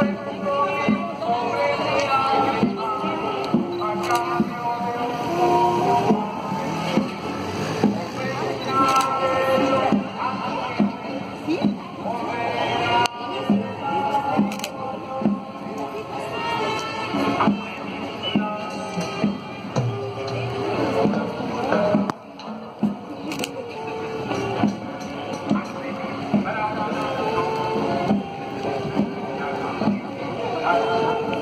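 Procession band music: a melody of held notes over a regular beat, with a brief lull about two-thirds of the way through.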